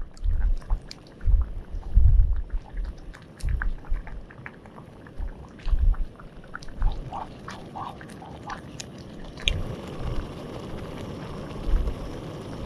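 A thick oat risotto simmering in a Trangia pot on a gas burner, with small wet pops and clicks over low thumps. A steadier hiss comes up about nine and a half seconds in.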